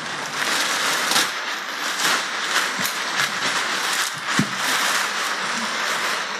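Clear plastic sheeting crinkling and rustling, with many sharp crackles, as it is handled and pulled down off the body.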